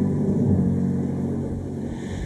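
Yamaha MX keyboard holding a low chord that slowly fades between sung lines.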